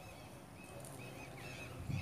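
Faint outdoor ambience with a few short, high-pitched bird calls.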